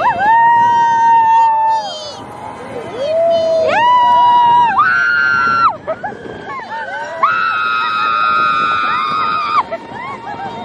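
Roller-coaster riders screaming: about four long, held, high-pitched screams one after another, the longest starting about seven seconds in.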